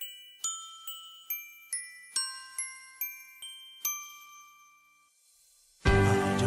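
A short melody of bright, bell-like struck notes, glockenspiel or chime style, about ten notes at roughly two and a half a second, each ringing and decaying, fading out a little past the middle. Just before the end a loud full musical backing with bass comes in.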